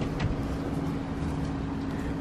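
A steady low mechanical hum with a constant pitched tone.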